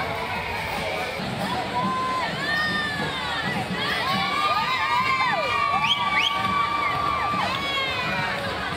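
Street parade crowd cheering and shouting, with many overlapping high-pitched shrieks and whoops that grow denser and louder from about the middle on.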